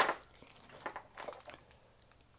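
Faint crinkling of a clear plastic bag being handled, a few brief rustles.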